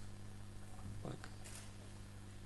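Quiet pause in a hall's amplified sound: low room tone with a steady electrical hum from the sound system, and one faint short sound about a second in.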